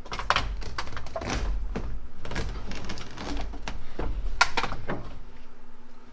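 Bench seat being lifted and tipped upright inside a 1977 Chevy C10 pickup cab: an irregular run of knocks, clunks and scrapes, the loudest near the start and about four and a half seconds in.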